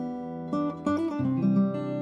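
Outro music of strummed acoustic guitar chords, with the chord changing about half a second and about a second in.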